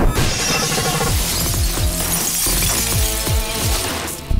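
A vehicle's glass side window shatters as a man is smashed through it: a sharp crash at the very start, then broken glass showering down for about three seconds. Underneath runs a loud action film score with a heavy, pounding bass beat.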